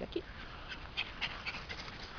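A small dog panting, a run of short, quick breaths.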